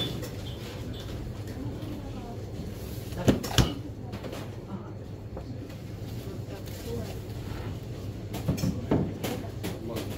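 Kitchen background: a steady low hum with two sharp knocks a little past three seconds in and a few more knocks near the end.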